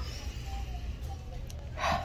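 A woman's quick, sharp intake of breath, a gasp, near the end, over a faint steady low hum.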